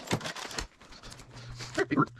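Handling noise: a run of light clicks and knocks as tools and small parts are moved about by hand. A steady low hum comes in about halfway through.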